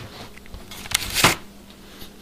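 A trigger spray bottle sprays cleaner twice in quick succession, about a second in, inside a sofa cushion cover. Fabric rustles faintly as an arm works inside the cover.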